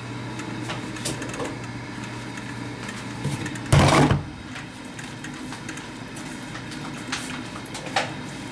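Thermal carafe slid into place under a Black & Decker coffee maker's brew basket, a short loud scraping knock about halfway through, with a few light clicks around it. A low steady hum stops just before the knock.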